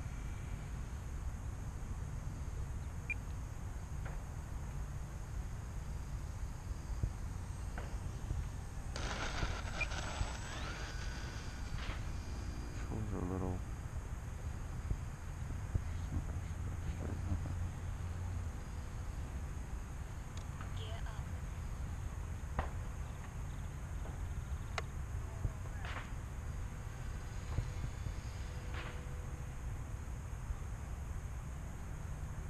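Steady low rumble of wind on the microphone, with faint distant voices about nine seconds in and a few light clicks.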